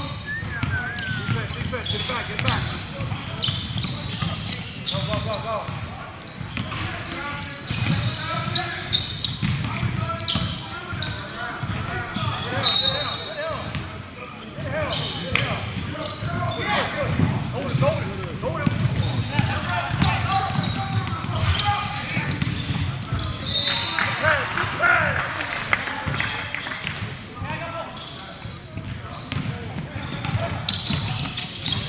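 Pickup basketball game on a hardwood gym floor: a ball bouncing over and over, with occasional short, high sneaker squeaks and players' and spectators' voices echoing in the hall.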